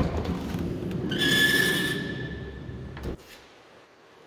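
Ford Transit van's sliding side door unlatched with a click and rolled open along its track, rumbling for about three seconds with a high squeak partway through, then stopping with a knock at the fully open position.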